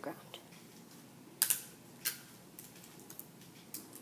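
A few short clicks and crackles of hands pressing tape and a small sensor module onto a hard tiled floor, the loudest about a second and a half in.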